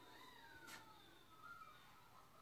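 Near silence with a faint, high call that falls slowly in pitch over about a second, followed by fainter short glides, and a single sharp click about three quarters of a second in.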